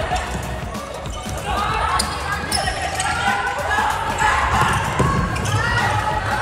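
Indoor futsal play on a hardwood gym court: the ball being kicked and bouncing in sharp knocks, the firmest around two to three seconds in and again about five seconds in, with players calling out.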